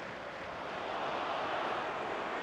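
Football stadium crowd noise, a steady roar of many voices that swells slightly.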